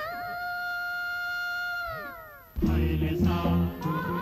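A female singer holds one long, wordless high note, steady after a brief waver, then slides down about two seconds in. An instrumental film-song accompaniment with a strong bass comes in just after.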